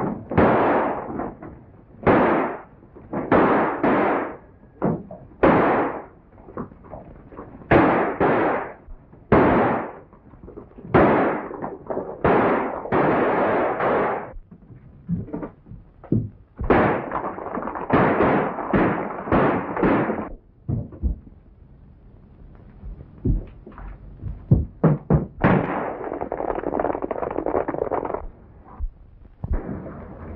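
Gunfire from a movie shootout: dozens of irregular shots, some in quick clusters, each with a short echoing tail.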